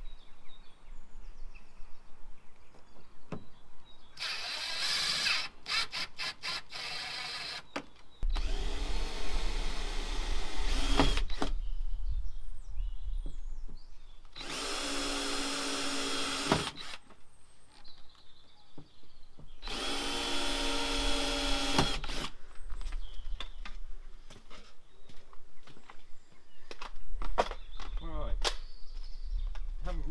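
Cordless drill-driver running in four short bursts of two to three seconds each, drilling and driving screws to fix an awning rail along a campervan's pop-top roof. A quick run of clicks follows the first burst.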